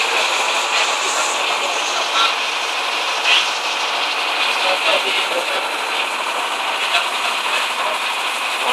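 Motorboat underway on open sea: a steady rushing noise of engine, wind and water, with faint voices in the background.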